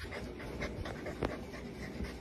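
Golden retriever puppy panting in quick, even breaths, about three a second, with one sharp tick a little past halfway.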